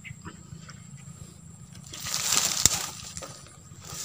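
Rustling that swells about two seconds in and fades within a second, with a single sharp click at its loudest, over a faint steady high hum.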